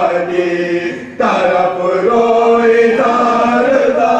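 Men's voices chanting a marsiya, an Urdu elegy of mourning, in a slow melodic recitation with long held notes. There is a brief break about a second in, then the next line begins.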